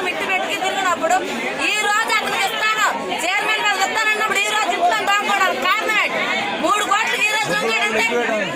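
Speech only: several people talking at once, with a woman's voice in front.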